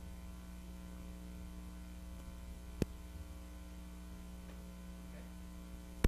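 Steady electrical mains hum from the sound system with the microphone muted, and one sharp click a little before the middle.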